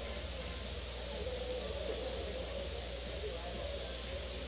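Pool hall room tone: a steady low hum with faint background chatter.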